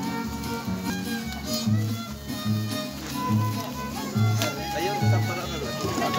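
Traditional folk dance music led by a violin melody, over a steady low beat a little faster than once a second.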